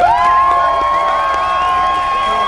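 Crowd of spectators cheering, with one voice holding a long high shout that swoops up at the start and carries steadily through.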